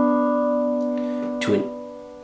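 Digital keyboard with a piano voice holding a two-note B and D chord, the right-hand part of B minor, fading slowly as it sustains.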